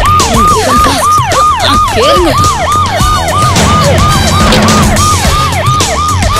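Police siren in a fast yelp, each cycle jumping up and sliding down, about three times a second, over background music.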